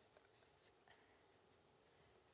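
Near silence with faint scratching of a pen on paper as an answer is written down.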